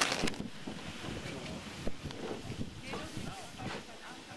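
Wind buffeting the microphone, with faint voices of people talking in the background; a short burst of noise at the very start.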